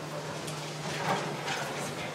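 Room ambience of a busy indoor space: a steady low hum with a few scattered light knocks and faint voices in the background.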